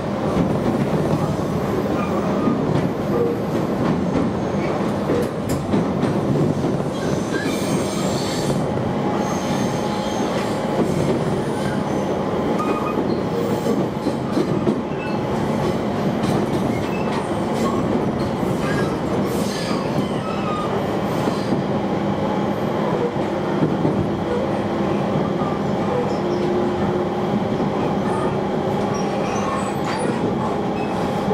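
Running noise of a JR East Joban Line electric train heard from inside the passenger cabin: a steady rumble of wheels on rails with faint steady motor tones, and short high-pitched wheel squeals now and then through the middle stretch.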